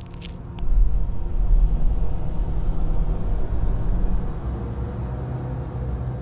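A few short crackles, then a deep low rumble that swells in suddenly about a second in and eases off over the last two seconds.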